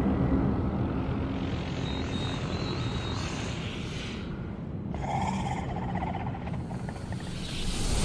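Dark film soundtrack: a low rumbling drone as the eerie music fades in the first second. A faint thin high tone sounds briefly about two seconds in, and a sudden rougher, mid-pitched sound starts about five seconds in.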